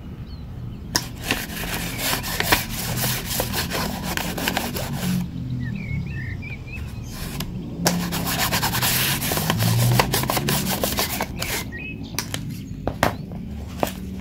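A sheet of paper rustling and crinkling as the jaws and cutting edges of combination pliers are closed and dragged on it, with many sharp clicks throughout.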